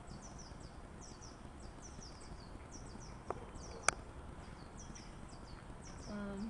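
A small bird chirping over and over in the background: quick high falling notes in twos and threes. Two sharp clicks come a little past the middle, the second the louder.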